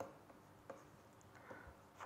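Very faint taps and light scratches of a stylus writing on a tablet, with a few short clicks spread through the pause.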